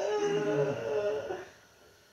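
A man's drawn-out wordless vocal sound, a hum-like "mmm" held for about a second and a half before it stops.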